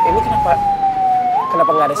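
Ambulance siren wailing in slow sweeps: its pitch falls steadily, jumps up about a second and a half in, and starts rising again.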